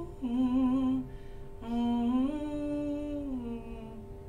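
A woman humming a slow tune with her mouth closed, in two phrases: a short wavering one at the start, then a longer one from about a second and a half in that glides between notes and fades out near the end.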